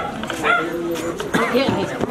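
Several people talking over one another, some voices high-pitched and raised.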